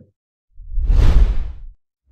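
A deep whoosh sound effect with a heavy low rumble under it, swelling in about half a second in and dying away a little over a second later.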